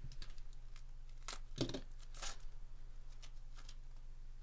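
Foil wrapper of a Topps Chrome Update Series trading-card pack being torn open by hand, crinkling in a quick run of sharp rips, the loudest about a second and a half in.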